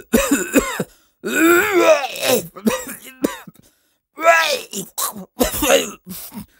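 A man coughing and groaning in about six strained, hawking bursts, as though bringing up thick phlegm.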